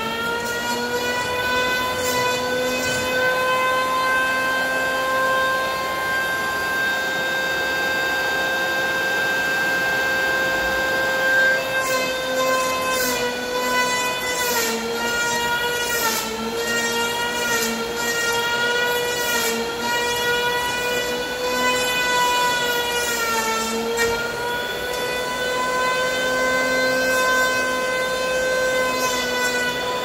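Handheld electric power planer running with a steady high whine, its pitch sagging a little as the blades bite into a Korean red pine slab. From about the middle on, the rasp of the cutter shaving wood comes in repeated passes.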